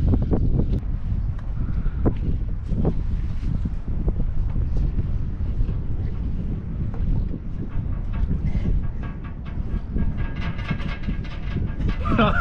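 Wind buffeting the microphone, a steady low rumble, with a few sharp knocks and scuffs as hands and feet grip the metal pole.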